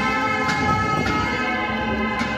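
Bells ringing: clanging strokes about half a second apart, each leaving a long ring of many steady tones.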